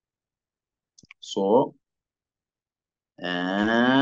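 Silence broken about a second in by a few faint clicks and a short falling voiced sound. Near the end a man's voice begins speaking over a video-call line.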